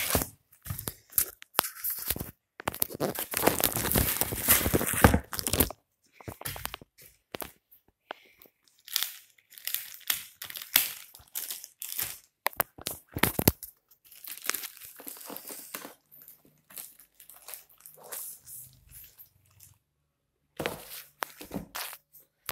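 Clear plastic wrapping crinkling and rustling as it is handled and pulled off a laptop, in irregular bursts of crackle, densest a few seconds in, with a short pause near the end.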